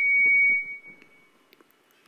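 A single high, steady whistle-like tone that is loudest at the start and fades away within about a second and a half.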